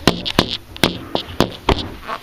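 A handful of sharp, close knocks and taps, about five in two seconds at uneven spacing, with fabric rustling against the microphone between them.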